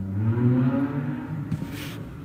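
A man's voice holding a long, low hum for about a second and a half, followed by a short hiss of breath near the end.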